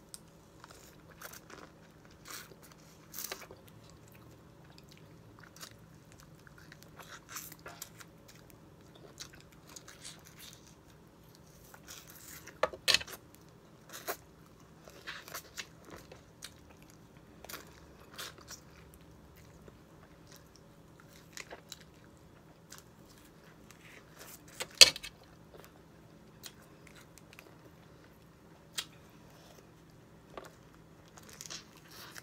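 Biting and chewing on salted lemon and lime wedges with hot sauce, with a run of short, irregular mouth clicks and crunches as the peel and pith are bitten, the loudest about 13 and 25 seconds in.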